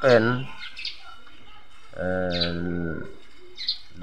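A small bird chirping briefly and high a few times in the background, while a man's voice briefly says a syllable at the start and holds a long, level 'uhh' for just under a second in the middle.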